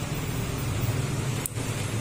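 Steady low background hum, with a short faint click about one and a half seconds in.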